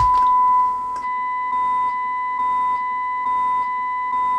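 Steady 1 kHz sine-wave test tone from a portable AM radio's speaker, received from a Talking House TH5 AM transmitter modulated at a moderate level of about 100 millivolts, so the tone sounds clean rather than harsh and distorted. It drops slightly in level about a second in, with only faint overtones above it.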